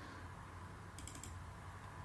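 A few faint clicks about a second in, over a low steady hum: a computer being worked at a desk.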